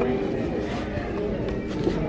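Indistinct chatter of many people in a large hall, with no single voice standing out.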